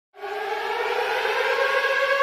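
Siren-like wail starting suddenly and rising slowly and steadily in pitch, as the intro of a hip-hop track.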